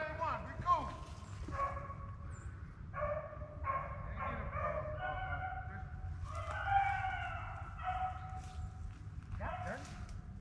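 A pack of rabbit hounds baying while running a rabbit: a string of drawn-out bawls, each about half a second to a second long, from several dogs overlapping.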